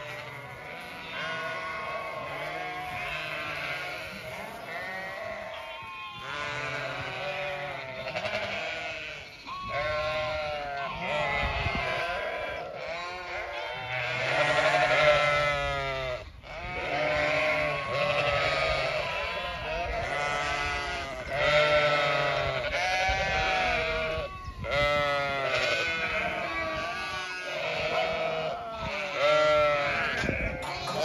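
A flock of Zwartbles sheep bleating, many calls overlapping one after another without a break: hungry sheep calling for their feed.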